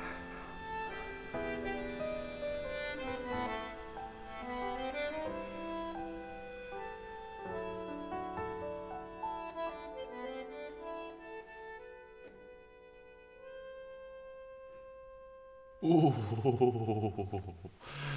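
Closing bars of a song carried by accordion: held chords over a descending lament bass, thinning to one long note that fades out near the end. The melody resolves to the home chord, but the harmonies are left unresolved.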